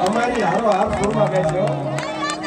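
Men talking through microphones over a PA system, the voices amplified and a little echoing, with a steady low hum in the second half.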